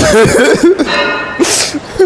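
A man laughing in short voiced bursts, ending in a sharp, breathy exhale about one and a half seconds in.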